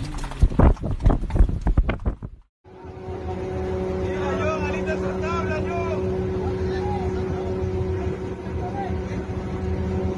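A fishing boat's engine running with a steady, even hum from about two and a half seconds in. Before it comes a short stretch of crackling clicks and knocks.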